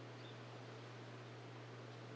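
Faint room tone: a steady low hum under a soft even hiss, with no distinct sounds.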